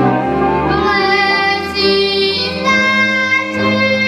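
A boy singing a Moravian folk song solo in a clear high voice, drawing out long held notes.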